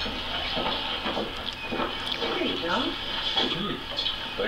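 Indistinct dialogue from a television playing in the room.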